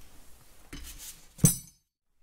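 Steel open-end wrenches handled faintly, then one sharp metallic clink about one and a half seconds in, after which the sound cuts off abruptly.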